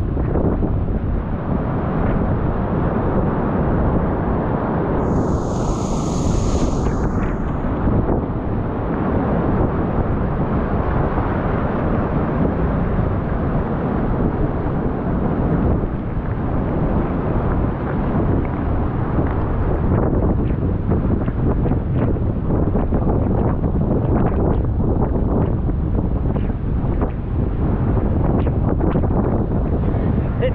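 Steady wind buffeting the microphone over the rush of surf foaming across a rock shelf and into a tidal pool.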